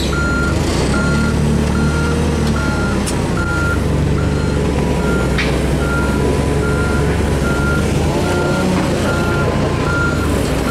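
Forklift back-up alarm beeping steadily, a little over one beep a second, over the Komatsu forklift's engine running as it travels. A couple of short metallic knocks come from the platform on the forks.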